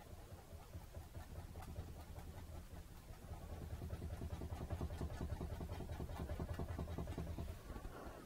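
A paintbrush dabbing quickly against a stretched canvas, a dull, rapid tapping with a low thud from the wobbling canvas. It grows louder from about three seconds in and stops just before the end.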